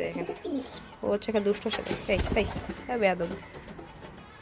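Domestic pigeons cooing: a series of low coos falling in pitch, about one a second. A short rustling burst comes about two seconds in.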